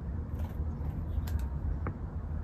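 Low, uneven rumble with a few faint clicks.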